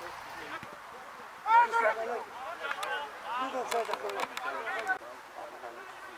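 Several voices shouting and calling out across a football pitch, loudest about a second and a half in, with a few short sharp knocks among them.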